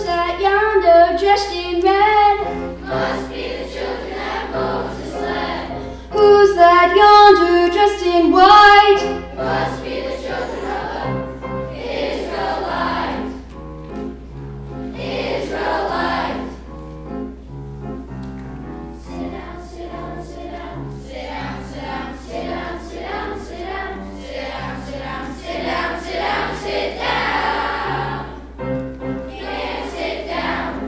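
Children's choir singing with piano accompaniment. The singing is loudest near the start and again from about six to nine seconds in, then carries on more softly over the piano.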